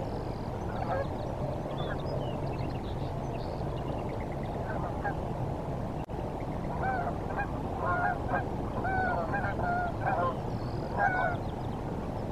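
Geese honking: scattered calls at first, then a flock calling over and over through the second half, the loudest sounds here, over a steady low background rumble.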